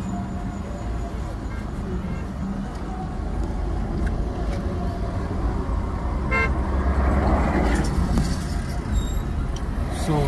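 Car interior road noise: a steady rumble of engine and tyres while driving in expressway traffic, with a short horn toot about six seconds in.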